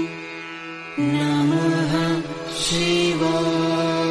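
Devotional mantra chanting with musical accompaniment: long, steadily held notes over a drone. It quietens for about the first second, comes back with a slightly wavering pitch, dips briefly midway, then settles into held notes again.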